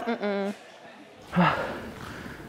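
Brief voice sounds with a pause between them: a short drawn-out syllable at the start, then a breathy vocal sound a little past halfway.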